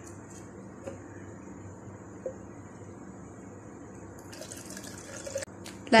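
Water poured from a plastic bottle into a plastic cup, a steady, quiet filling sound, with a few clicks of plastic being handled near the end.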